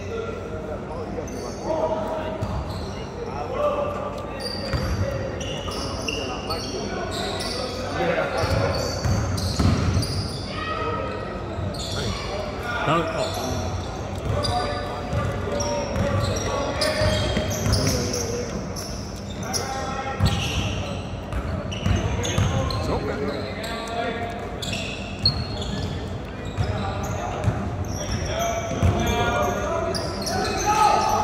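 Basketball game on a hardwood court in an echoing gym: the ball bouncing, with short high-pitched sneaker squeaks scattered throughout as players run and cut.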